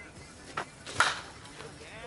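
Slowpitch softball bat striking the ball: one sharp crack with a short ring, about a second in. It is a solid hit, one that is probably gone for a home run.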